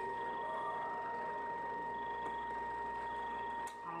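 A steady high-pitched whine in the background during a pause in speech, with a faint click near the end.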